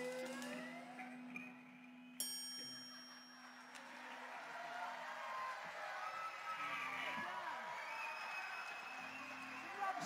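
A live band's last chord, acoustic guitars over held keyboard notes, ringing out and fading over the first few seconds; then audience cheers and shouts build toward the end.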